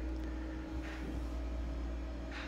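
Room tone: a faint, steady low hum with light hiss and no distinct event.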